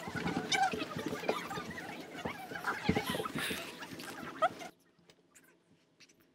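A class of children getting up from their desks and moving across the room together: scattered small voices and short knocks and bumps of chairs and desks. The bustle cuts off suddenly about three-quarters of the way in.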